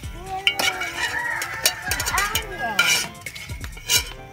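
Chickens calling, with a rooster crowing through the middle, over sharp clinks and scrapes of a slotted metal spatula against a metal wok of frying oil.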